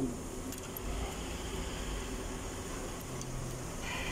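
A few faint metallic clicks as a timing-chain tensioner bolt is turned in by hand, over a steady low background hum.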